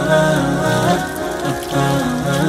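Chanted vocal music with a low held drone, laid over water pouring from a brass wall tap and splashing into cupped hands and the basin below.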